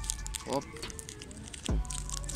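Faint crinkling of a paper sugar-cube wrapper being unwrapped by hand, over steady background music, with two short voiced sounds.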